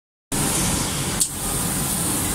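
Steady whirring hiss of a CNC gantry cutting machine running, its fans and air line going as the cutting head travels over the bed, with one short click about a second in.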